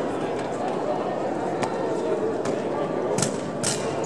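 Several sharp knocks and slaps from a rifle drill team's drill rifles and boots on the floor, the two loudest coming close together near the end, over a steady murmur of voices in a large hall.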